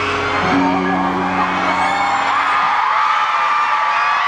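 The last held low notes of a live pop performance's backing music fade out about three seconds in, under a crowd of fans screaming and cheering.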